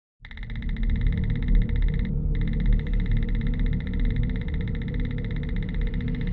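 Horror trailer sound design: a deep rumbling drone under a rapid, evenly pulsing high-pitched electronic buzz that drops out briefly about two seconds in.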